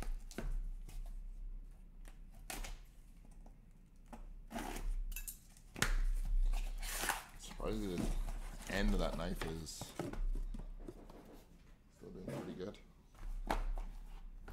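Packing tape on a corrugated cardboard case being slit with a blade and torn away, and the cardboard flaps pulled open. The sound is a run of irregular scrapes, clicks and tearing, loudest in the middle.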